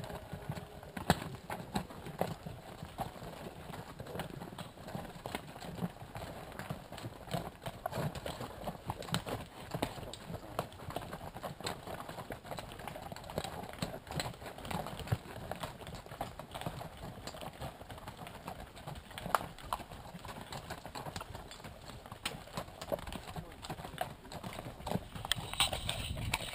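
Hooves of a pack train of horses and pack animals walking over a rocky trail, many irregular clops and knocks as shod hooves strike stone and packed dirt.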